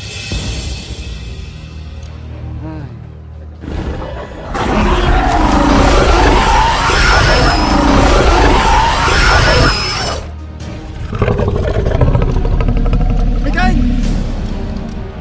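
A loud, drawn-out roar of a giant film dinosaur sound effect over background music, lasting about five seconds in the middle, followed by a shorter rumbling stretch near the end.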